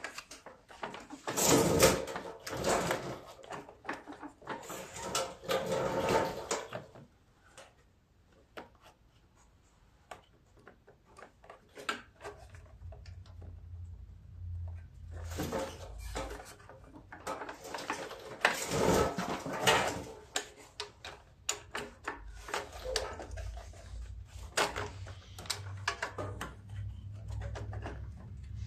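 Hands working the snowblower's carburetor assembly, its plastic piece, vacuum hose and linkage, into place: irregular rattling, scraping and knocking of plastic and metal parts, in two spells with a quiet pause in the middle. A faint low hum runs under the second half.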